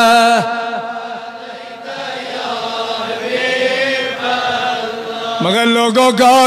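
A man's voice chanting in long, held, wavering notes. One drawn-out note ends just after the start, a softer stretch of chanting follows, and a new loud held note rises in near the end.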